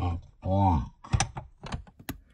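Plastic LEGO bricks clicking as fingers press and fit pieces into a brick model, with several sharp clicks in the second half. A short wordless vocal sound comes about half a second in.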